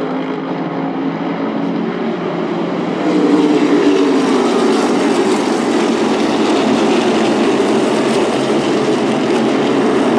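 A pack of NASCAR Whelen Modified race cars, their V8 engines running at speed. The sound grows louder about three seconds in as cars pass close, and the engine notes slide down in pitch as they go by.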